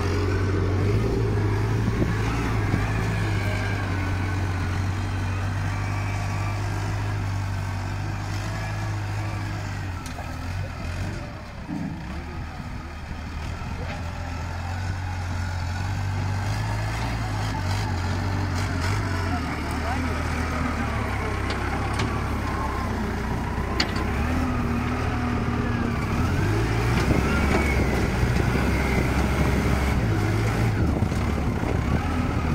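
TCM 815 wheel loader's diesel engine running steadily as it works, a low drone that drops off for a few seconds about a third of the way through and builds again toward the end.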